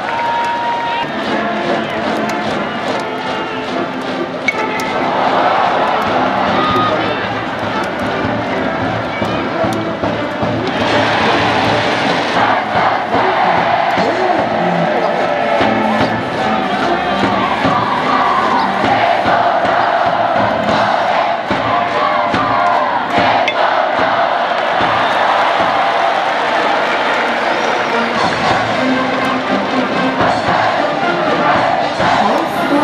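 Stadium cheering section: a brass band playing with the crowd chanting and cheering. The sound grows louder a few seconds in and again around the middle. There is one sharp crack about four and a half seconds in.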